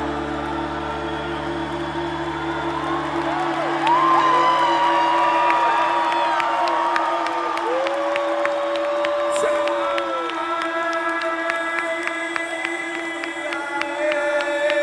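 A live band in an arena holds sustained synthesizer chords, and the low bass drops out a few seconds in. The crowd cheers and whoops over it, and near the end short clicks come in.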